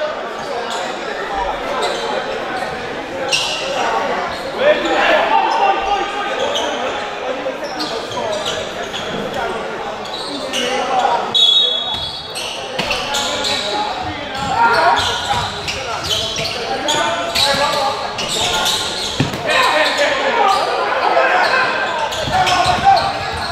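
Gymnasium noise during a basketball game: many voices from players and spectators talking and calling out, with a basketball bouncing on the hardwood floor, all echoing in the hall.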